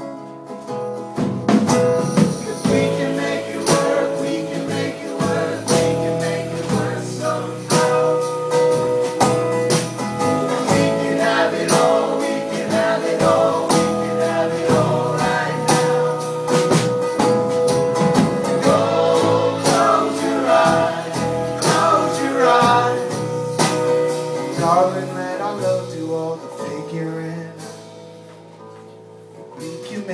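Live folk band playing an instrumental passage: acoustic guitars, upright bass and a steady beat, with a long held note running over most of it. It quietens over the last few seconds.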